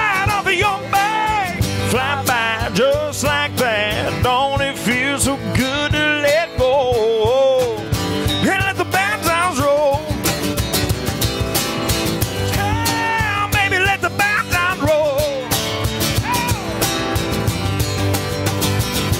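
Live acoustic country band: two acoustic guitars strumming over a steady cajón beat, with singing over it until near the end, when only the guitars and cajón play on.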